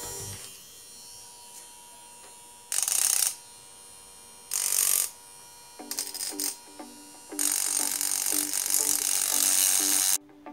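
Small hand-held DC-motor rotary tool with a cutting disc, grinding into a steel kitchen-knife blade in short bursts: two brief bursts, then a longer cut of about two and a half seconds near the end.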